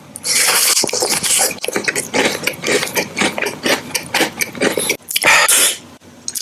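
A person chewing a white square block of food right at the microphone: a dense run of wet clicks and crackles from the mouth, with two short hisses, one near the start and one about five seconds in.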